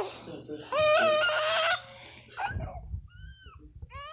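A toddler's drawn-out, high-pitched vocal sound held for about a second, followed by a few short, faint squeaky sounds near the end.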